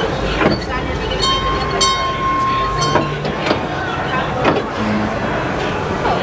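Mine ride train cars rolling along the track, with sharp wheel clicks over the rail joints about once a second over a steady rumble. A steady high tone sounds for about two seconds, starting about a second in.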